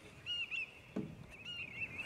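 A bird calling: two short chirps, then a wavering, warbling call from about a second and a half in. There is a soft low knock about a second in.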